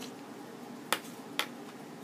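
Two sharp clicks about half a second apart from a small plastic cosmetics jar being handled, over a steady low hum in the room.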